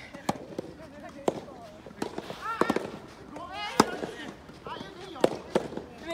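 Soft tennis rackets striking the rubber ball, a sharp pop about once a second from the near and far courts, with players' voices calling between the hits.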